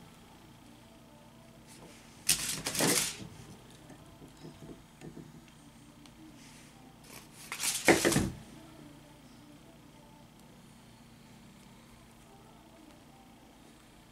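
Two brief rustling clatters of hand tools and craft materials being handled on a tabletop, one about two seconds in and a louder one near the eight-second mark, with a few faint taps between them over quiet room noise.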